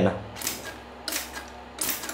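A hand-held stainless steel lever-pump sprayer being worked and handled: about three short, sharp metallic clicks with squirts, roughly two-thirds of a second apart.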